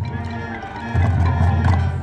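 High school marching band playing: brass and woodwinds holding full chords over a heavy low end, with a loud new chord struck about a second in.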